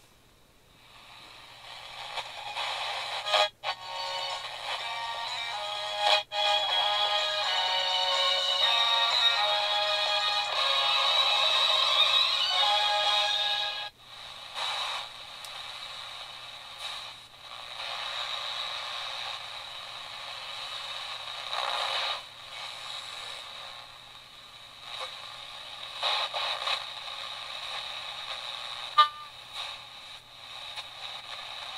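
AudioComm RAD-P2227S pocket AM/FM radio playing FM reception through its small built-in speaker, thin with no bass, while being tuned down the band. A music broadcast comes in a couple of seconds in, cuts off suddenly about halfway as the dial moves, and is followed by quieter, broken-up sound between stations.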